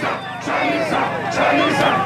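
A crowd of many voices shouting over one another, with a steady low hum beneath.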